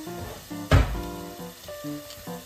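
Pork and asparagus sizzling in a lidded frying pan, with a single hard thud less than a second in.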